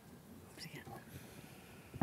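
Faint whispered speech and light handling noise close to a lectern microphone in a quiet room.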